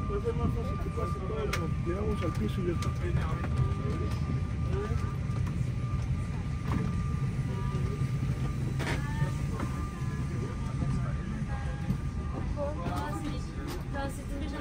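A steady low rumble from a vehicle's interior, with faint chatter from several people and a thin steady whine that stops about ten seconds in.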